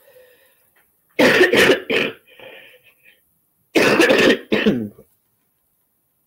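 A person coughing in two short bouts, one about a second in and the other about four seconds in.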